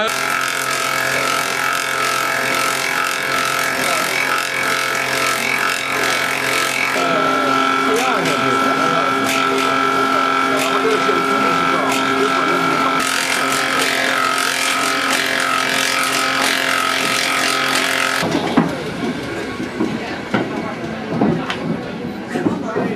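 A 70-year-old duplicating (copying) lathe running, its three knives cutting the outside of a wooden clog from green wood: a steady motor whine under a continuous rasp of cutting, which shifts in tone twice and then stops near the end, leaving people chattering.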